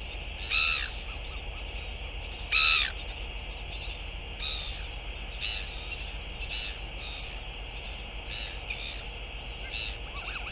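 Short, high-pitched bird calls: two loud ones in the first three seconds, then fainter ones about once a second.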